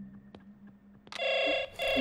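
Telephone ringing: two short rings of about half a second each with a brief gap between them, starting a little past a second in.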